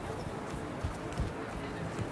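Busy pedestrian street ambience: footsteps on paving stones and the murmur of passers-by, with two low thumps about a second in.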